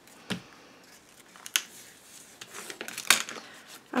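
Paper and cardstock being handled and flipped over on a tabletop: light rustling with a few sharp clicks spread through it.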